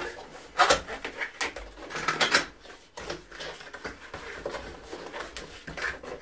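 A cardboard box being opened by hand: the flaps and packaging rustle and scrape in short irregular bursts, with louder crackles about a second and about two seconds in.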